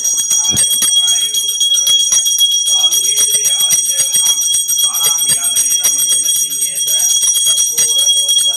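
Puja hand bell rung rapidly and without pause, a steady bright ringing, with people's voices underneath.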